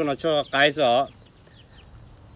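Chicken clucking: a quick run of short, wavering calls in the first second, then it goes quiet.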